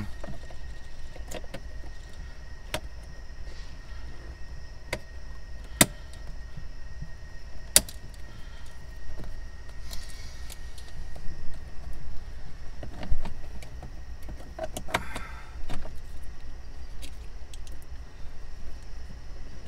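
Scattered sharp plastic clicks and light rattling of wiring connectors being handled and plugged into the back of a 2006 Ford F-550's gauge cluster, with a few louder single clicks among them, over a low steady hum.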